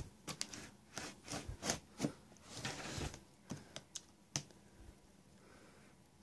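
Folding knife slitting packing tape on a cardboard box: a run of irregular scratchy clicks and short scrapes that stops about four and a half seconds in.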